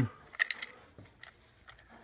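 Ice cubes clinking against a drinking glass as it is tilted in the hand: a quick cluster of light clicks about half a second in, then a few fainter ticks.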